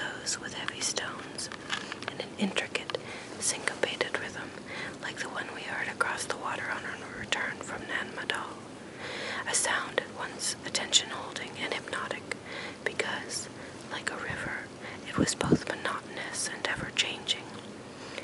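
A person whispering, reading a book passage aloud in a slow, even voice, with small sharp clicks scattered through it.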